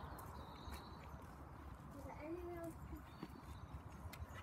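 Quiet outdoor ambience with a few faint footsteps on paving slabs, and a brief murmured voice a little after two seconds in.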